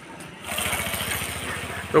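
An engine running steadily, setting in about half a second in, with a fast, even pulse.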